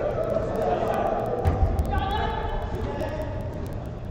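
Five-a-side football being played in an indoor hall: players' indistinct shouts and calls, with one dull thud of the ball being struck about a second and a half in.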